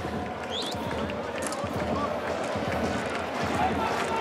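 Football stadium sound during open play: a steady crowd murmur with scattered shouts and short low thuds of the ball and players on the pitch.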